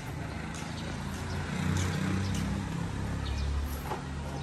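A low, steady motor hum that grows a little louder near the end, with a few faint clicks.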